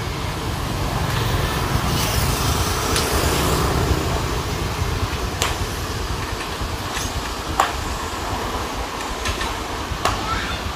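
Road traffic going by, one vehicle swelling louder and passing in the first few seconds over a steady low rumble, with a few sharp clicks or knocks scattered through.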